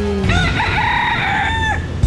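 A rooster crowing once: a single drawn-out crow that rises at the start and drops off at the end, over a steady low rumble.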